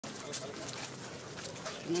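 Background chatter of a small crowd outdoors, with faint scattered voices and shuffling. A man's voice starts loudly near the end.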